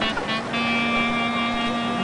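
Clarinet playing a couple of short notes, then holding one long steady note for over a second.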